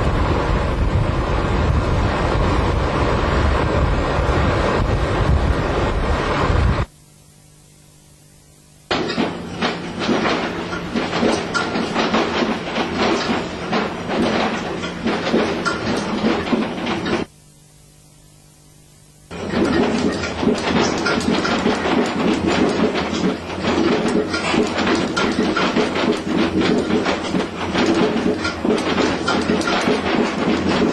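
Vehicle running noise: a steady rumble with dense clatter and a low hum. It cuts off abruptly twice, for about two seconds each time, about 7 and 17 seconds in.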